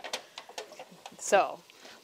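A few faint clicks and taps from kitchen items being handled at a countertop, with one short spoken word about a second in.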